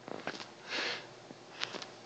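A man sniffing once through his nose, a short hiss about a second in, with a few faint clicks around it.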